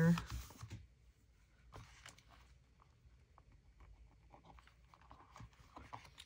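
Faint, scattered small rustles and light taps from hand work on a paper journal cover, as glue is squeezed from a plastic bottle along it and the cover is pressed down.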